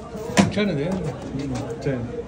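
A man's voice talking, with one sharp knock about half a second in.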